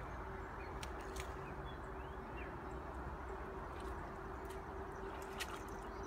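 Steady outdoor background: a low rumble with a faint steady hum, a few sharp clicks and brief bird chirps.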